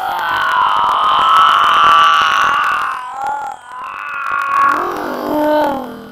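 A teenage boy's loud, drawn-out anguished wail, held high for a few seconds, then breaking and dropping in pitch near the end.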